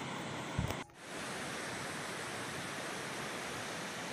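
Steady rushing of a shallow river flowing over rocks, with a brief low thump just before a second in.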